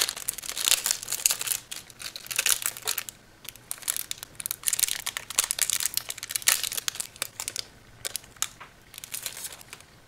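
Thin clear plastic card wrapper crinkling as it is worked open and a trading card is slid out, in irregular bursts of crackling that thin out near the end.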